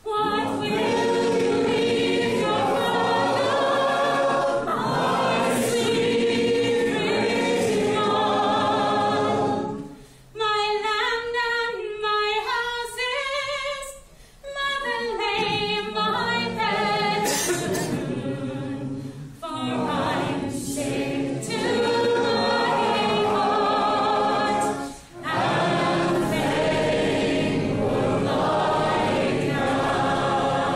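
Unaccompanied group singing: a roomful of voices joins in the chorus of a folk song. About ten seconds in, the group drops away and a single woman's voice sings a line alone, then the many voices come back in.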